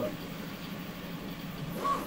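Steady low room noise, a faint even hum, with a short vocal sound near the end.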